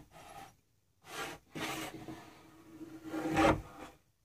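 A wooden board slid by hand along a homemade jointer's fence and table: wood rubbing and scraping on wood in a few short strokes, the loudest near the end.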